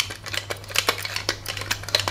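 Hand screwdriver turning a screw in a hard disk drive's head assembly: a quick, uneven run of small metallic clicks, about five a second.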